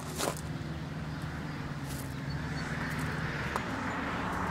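A steady low engine hum, with footsteps crunching on gravel.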